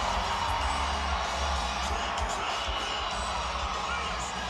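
Arena music with a heavy bass, playing over a cheering rodeo crowd just after a bull rider's qualified 8-second ride.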